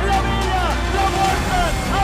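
Background music: a song with a vocal line over a steady bass, its melody dropping in repeated swoops.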